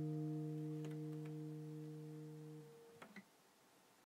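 Final chord of an acoustic guitar capoed at the third fret, a C-shape chord sounding as E-flat major, ringing out and slowly fading. The strings are damped about three seconds in, with a few faint finger clicks.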